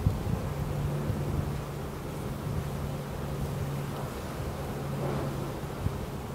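Honeybees humming at an open hive, a steady low drone, over low wind rumble on the microphone, with a short click near the end.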